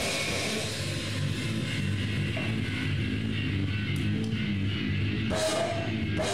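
Live heavy hardcore band playing loud: distorted electric guitars and bass on a low riff, with the full band and cymbals crashing in about five seconds in.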